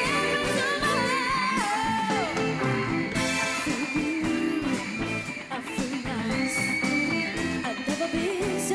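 A young girl sings a pop song over a band accompaniment, holding long notes with vibrato. The music dips briefly about five seconds in, and then she holds a long, steady high note.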